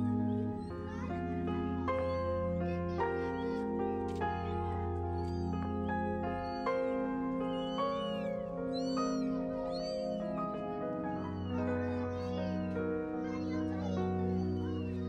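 Newborn kittens mewing over and over, thin high-pitched cries coming in clusters, over soft background music of held notes.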